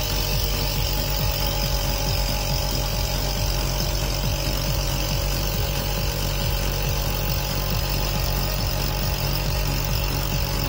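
Small electric vacuum pump running with a steady hum, pulling vacuum on a glass filtration flask so the HPLC mobile phase is drawn through the membrane filter.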